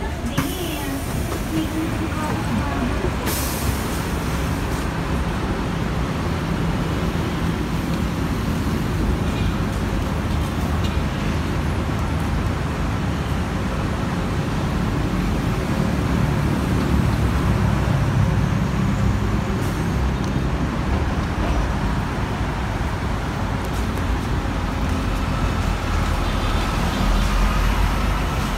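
Scania K-310 city bus with its diesel engine running, mixed with roadside traffic noise. About three seconds in there is a short hiss of compressed air, and the engine grows louder around the middle and again near the end.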